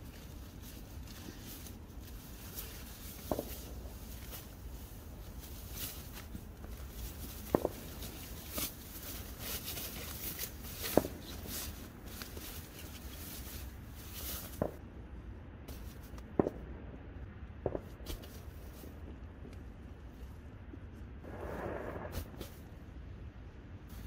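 Gear being handled inside a tent: rustling and crinkling of tent fabric and a silver foil-faced sheet. Several sharp knocks or clicks are scattered through it.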